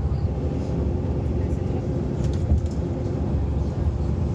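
Steady low rumble of a bus's engine and tyres heard from inside the cabin while it drives along a motorway.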